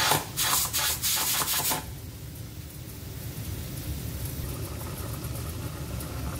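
Stovetop pressure cooker letting off steam through its weighted valve: several loud hissing spurts in the first two seconds as the pressure is released by hand. After that, only a low rumbling from the pot.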